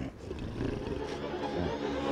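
Cartoon soundtrack: a low rumbling drone that swells steadily under the music, after a short grunt at the very start.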